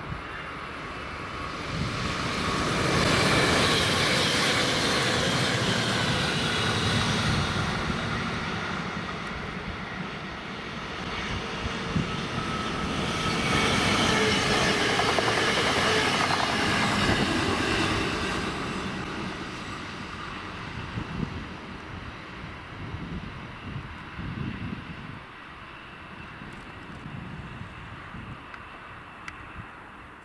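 Electric multiple-unit trains passing, the first a DB class 1440 (Alstom Coradia Continental): two passes, each swelling to a loud rush of wheels on rail with a high whine, then fading away.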